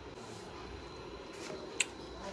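Quiet room noise with one short, sharp click near the end.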